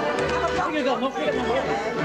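Several people chattering and talking at once over background music with a steady bass pulse.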